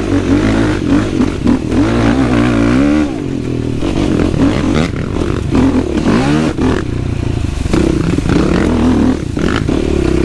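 Yamaha YFZ450R quad's single-cylinder four-stroke engine revving up and down as it is ridden, its new engine being broken in. The revs fall sharply about three seconds in and climb again a couple of seconds later, with rattles and knocks from the ride.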